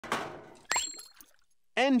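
Cartoon sound effects from a soda vending machine. A clattering thunk dies away over about half a second, then a sharp metallic ping rings on briefly with a quick rising slide. A voice begins just before the end.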